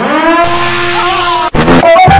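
A car's loud pitched screech, rising at first and then held steady, which cuts off abruptly about a second and a half in.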